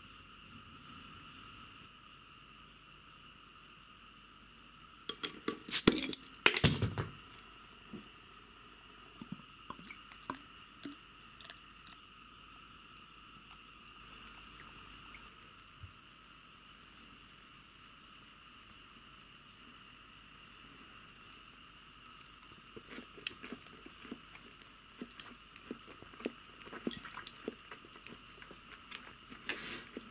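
Tableware on a table: a cluster of loud glass-and-dish clinks about five to seven seconds in, then scattered light clicks of chopsticks against a plate over the last eight seconds. A faint steady high-pitched hum runs underneath.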